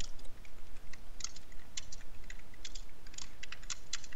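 Typing on a computer keyboard: quick, irregular runs of keystroke clicks with short pauses between words.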